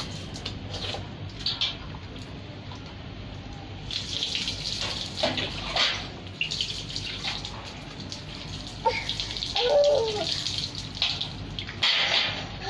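Mugfuls of water poured over a soapy toddler during a bath, splashing onto the child and the ground in several separate pours, the biggest about four seconds in and again near the end.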